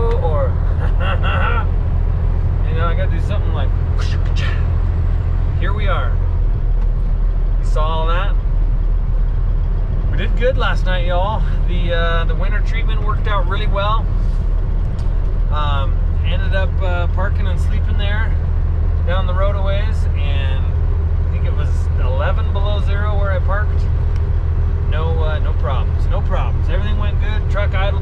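Steady low drone of a semi truck's diesel engine and road noise, heard from inside the cab while it drives down the highway. A man talks over it.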